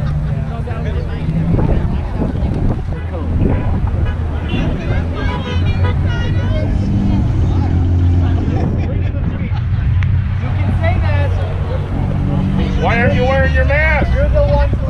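Car traffic running at a busy intersection, a steady low rumble, with scattered voices of people at the roadside and a raised voice near the end.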